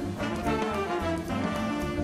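Jazz ensemble playing live: a horn section of brass and saxophones over a drum kit with cymbal and drum strikes, bass and piano.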